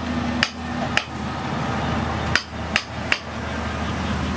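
Five sharp knocks, unevenly spaced, as a wooden handle is driven down into the hot socket of a forged steel garden tool, over a steady low hum.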